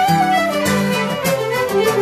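Acoustic traditional tune played by a jam group: fiddles carry the melody in unison over plucked guitar and mandolin accompaniment, steady and unbroken.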